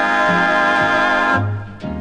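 Swing choir and band holding a final sustained chord that cuts off about a second and a half in, followed by a short closing accent with bass near the end: the last bars of a 1950s swing vocal number.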